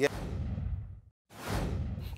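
Whoosh sound effects on an animated title transition: a whoosh that falls in pitch and fades out about a second in, a brief silence, then a rising reverse whoosh.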